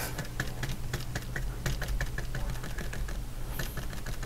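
Small flat paintbrush dabbing and scrubbing paint onto the painting surface, a quick run of soft taps several a second.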